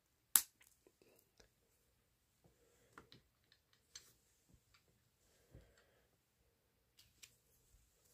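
One sharp plastic click as a small Playmobil hoverboard part snaps into place, followed by faint scattered clicks and taps of small plastic toy pieces being handled.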